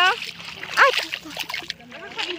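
Bare feet wading through ankle-deep seawater, with light splashes and sloshing as they step.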